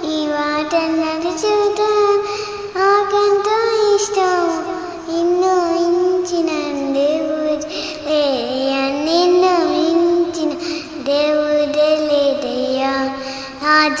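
A young girl singing a Telugu Christian song, holding long notes that slide up and down in pitch, with brief breaths between phrases.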